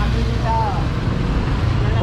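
Motorcycle engine idling steadily amid street traffic, with a brief voice about half a second in.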